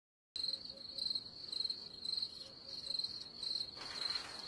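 A cricket chirping: short, even trills about twice a second, starting just after the opening.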